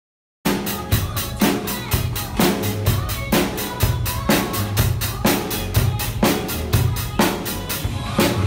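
Acoustic drum kit played in a steady groove over a backing track, starting about half a second in: bass drum and snare strikes about twice a second with cymbal wash on top.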